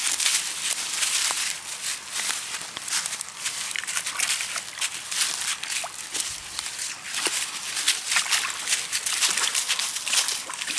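Continual rustling and crackling of fallen leaves and wet mud, with many small irregular scuffs, as dogs dig and move about in the leaf litter.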